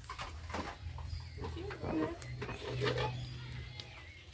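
Faint, indistinct voices over a low steady hum, with a few light clicks.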